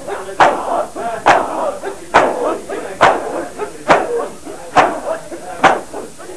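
A crowd of men chanting together while striking their bare chests with their palms in unison (matam), one loud slap about every 0.9 seconds.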